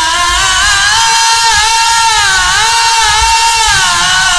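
Melodic Quran recitation by a single voice, one long drawn-out phrase held without a break, its pitch bending up and down in ornamented turns.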